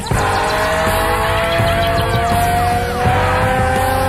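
Instrumental rock jam with Moog synthesizer and guitars over bass and drums: the sound gets louder all at once at the start, then two long held tones slowly rise in pitch under a mass of swooping, sliding glides.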